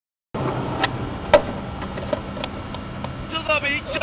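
Skateboard wheels rolling on asphalt, with a few sharp clacks of the board, the loudest about a third of the way in. A man's voice calls out briefly near the end.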